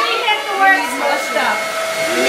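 Several people talking at once in the background over a steady whirring hum with a faint constant whine.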